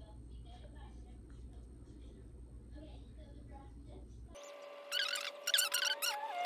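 Faint rustling and small clicks of fabric and straight pins being handled over a low steady hum. Near the end the hum cuts off and a loud, high-pitched voice comes in.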